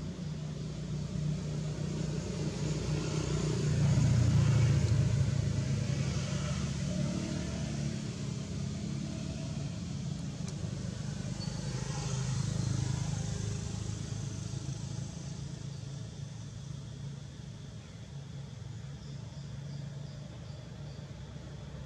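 Engine hum of a passing motor vehicle, a steady low drone that swells to its loudest about four seconds in and fades. A second, lighter swell comes around twelve seconds in.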